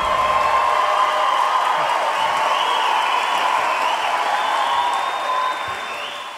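Theatre audience applauding at the end of a song, with some cheering mixed in. The applause starts to fade near the end.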